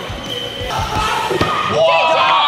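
A dodgeball bouncing and thudding on a hardwood gym floor, several dull thuds in the first second and a half. Voices rise near the end.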